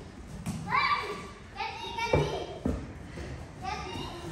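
Children's high voices calling out in short bursts in a large hall, with a few dull thumps in between.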